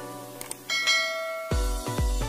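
Subscribe-animation sound effects over music: a couple of clicks, then a notification bell ding that rings on. About a second and a half in, a heavy bass beat kicks in at about two beats a second.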